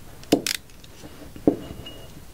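Handling sounds from a baton shaft and a roll of double-sided tape: a light knock about a third of a second in, followed closely by a short scratchy rasp, and a second knock about a second and a half in.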